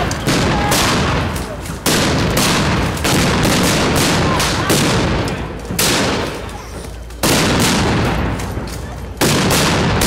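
Rifles firing blank rounds in a battle reenactment, shot after shot at irregular intervals, each with a long echoing tail. Loud shots come about every one to two seconds, with fainter, more distant shots in between.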